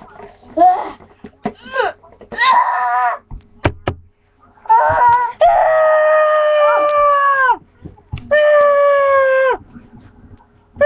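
A boy's mock screams of pain. A few short yelps come first, then two long, high, steady screams of about two seconds each, one about halfway and one near the end, each dropping in pitch as it cuts off.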